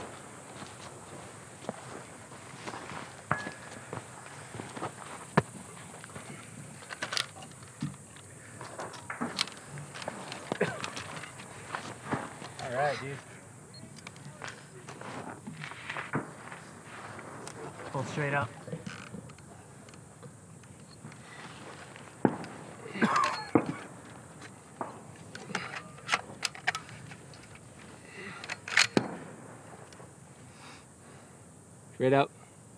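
Scattered sharp clicks and knocks from handling a bipod-mounted rifle and shooting bags, with short snatches of low voices; the loudest knocks come about 22 and 29 seconds in.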